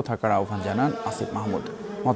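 A voice trailing off, then a steady buzzing hum over the murmur of a crowd's voices.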